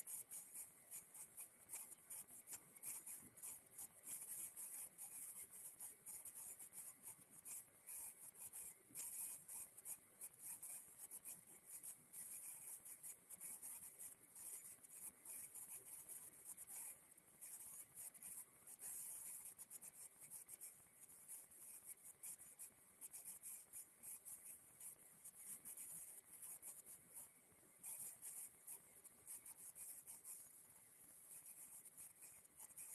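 Near silence: only a faint, high-pitched hiss that flickers and crackles without a break.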